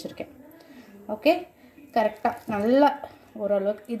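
A woman speaking, after about a second of quiet.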